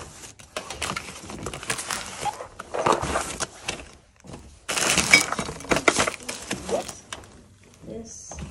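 Hands rummaging through a box of small items: plastic bags crinkling, with items knocking and clinking as they are moved, in two spells with a short pause around the middle.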